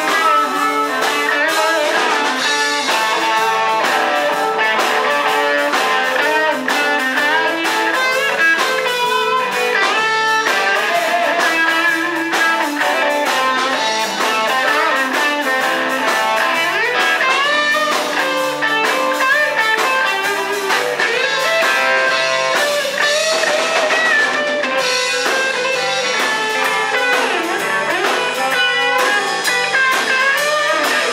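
A live blues band playing an instrumental passage: electric guitars and a drum kit, with a harmonica played into a handheld vocal microphone.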